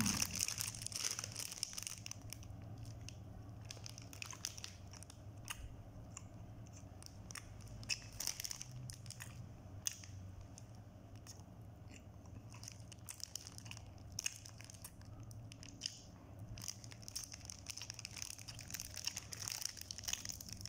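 Close-up chewing of soft bread, with small mouth clicks, and the plastic bread wrapper crinkling at the start and again near the end. A steady low hum runs underneath.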